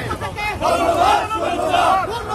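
A group of marchers shouting slogans together in long, drawn-out calls.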